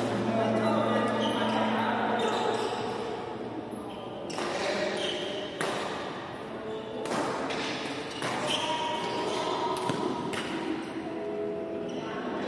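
Badminton rackets striking a shuttlecock in a large, echoing sports hall: a string of sharp hits about a second apart through the second half, over the chatter of players' voices.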